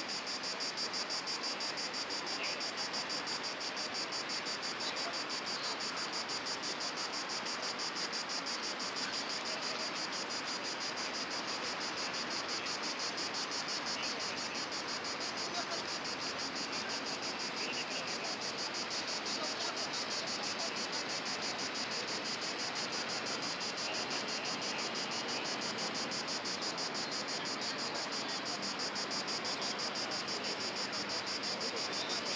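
Insects chirping in a high, evenly pulsing rhythm of a few pulses a second, steady throughout, over a constant background rush.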